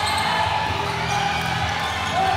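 A basketball being dribbled on a hardwood court over a steady hum of crowd noise in the gym.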